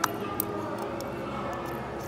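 Small metal clicks of tweezers against a watch's button-cell battery and case as the battery is lifted out: a sharp click at the start, another about half a second later, then a few faint ticks, over a steady background hum.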